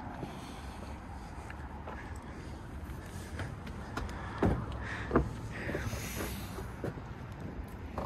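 Hard-shell rooftop tent being opened: a couple of short knocks and some soft rustling over steady outdoor background noise.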